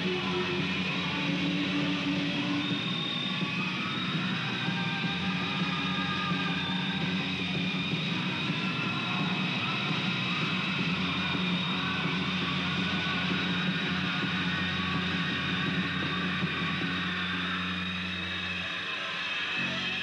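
A rock band playing live, with electric guitars over a steady dense wall of sound; the sound shifts just before the end.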